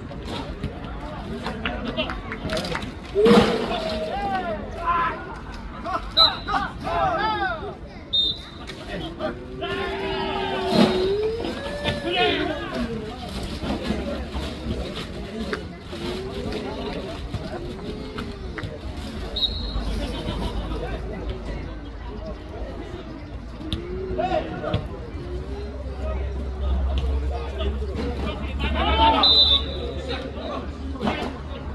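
Players' shouts and calls on a jokgu (foot volleyball) court, short and repeated throughout, with a few sharp ball-kick thuds in the first dozen seconds while a rally is played.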